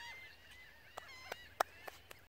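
Birds calling, many short overlapping arched calls. From about a second in they are cut across by four or five sharp clicks, the loudest about a second and a half in.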